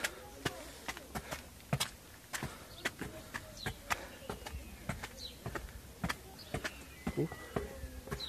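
Footsteps and handling of a hand-held camera: a quiet, irregular scatter of light clicks and taps, several a second, with a few faint high chirps in the background.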